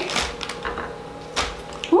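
Clear plastic bag crinkling, with a few light knocks as cracked hard-boiled eggs are dropped into it.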